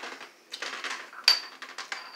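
Small clicks and taps of the Showpony yo-yo's two halves, taken apart, being handled and set down on the tabletop. The sharpest click comes just over a second in and rings briefly.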